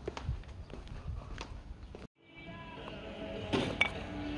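Faint outdoor street sound with light footsteps on a paved sidewalk. About halfway through it cuts out abruptly, then comes back with faint music of several steady tones and a few sharp clicks near the end.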